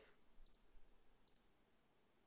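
Near silence with a couple of faint computer mouse clicks.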